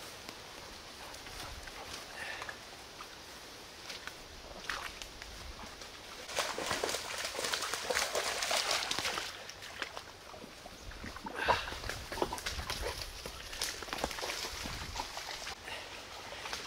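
A dog running and splashing through shallow water on a flooded trail, with a stretch of steady splashing over about three seconds in the middle; scattered light rustles and footfalls follow.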